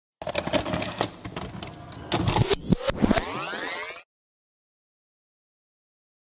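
An edited sound effect of dense clattering noise with many sharp clicks, ending in several rising sweeping tones, that cuts off suddenly about four seconds in.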